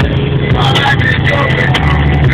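Steady cabin noise of an Audi A3 Sportback cruising at about 200 km/h on cruise control: engine, tyre and wind noise, with music and vocals playing along underneath.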